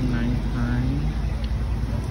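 Street ambience: people's voices over the steady low hum of a motor vehicle engine running nearby.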